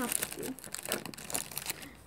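A small plastic tube of glitter being shaken and tapped to pour it out, giving an irregular run of light clicks and rustles.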